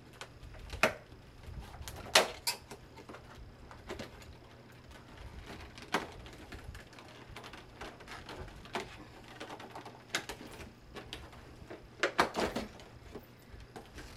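Scattered sharp plastic clicks and taps as a compartment of a clear plastic advent calendar box is worked open by hand, with a quick run of several clicks near the end.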